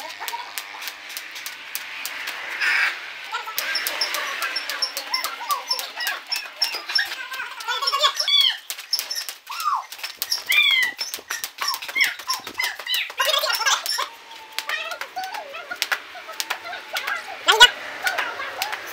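Skipping rope slapping the hard dirt again and again as it turns, with short sharp impacts from the jumpers' feet. Voices call out and whoop over it, most of all in the middle stretch.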